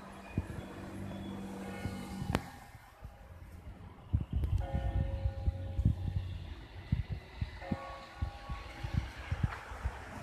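Street ambience with a steady low engine hum from traffic in the first couple of seconds. Later come two spells of held, musical-sounding tones, each lasting a second or so, and scattered low thumps on the microphone.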